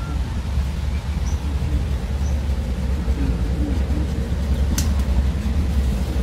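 Wind buffeting the microphone as a steady low rumble, with two faint high bird chirps in the first few seconds and one sharp click about five seconds in.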